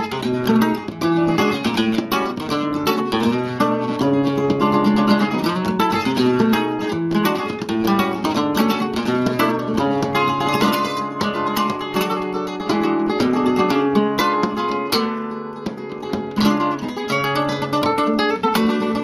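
Background music of plucked acoustic guitar, a continuous run of quick notes.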